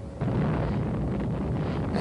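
Deep, steady rumble of an underwater nuclear explosion, setting in sharply about a fifth of a second in and holding without a break.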